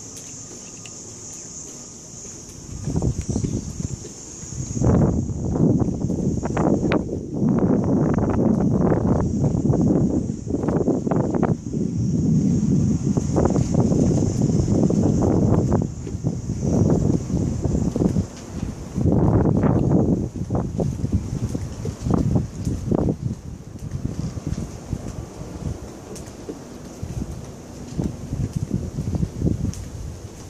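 Wind buffeting a phone's microphone in irregular gusts of low rumble, starting about three seconds in and easing off over the last several seconds.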